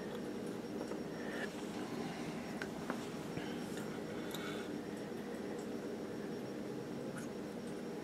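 A quiet, steady hum of background room tone, with a few faint, brief clicks as a soldering iron works capacitor leads on a circuit board.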